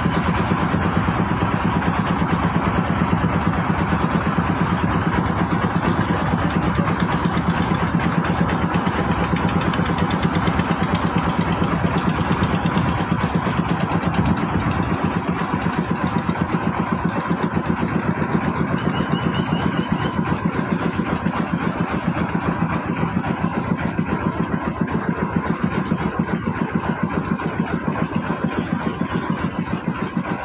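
A boat's engine running steadily at cruising speed, with an even, fast chugging pulse throughout.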